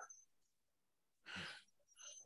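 Near silence, broken about a second in by one faint, short breathy exhale, like a sigh, carried over a video-call microphone.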